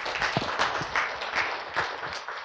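Audience applauding, many people clapping together at a steady level.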